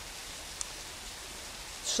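Steady, even hiss of running water, with no rhythm or change.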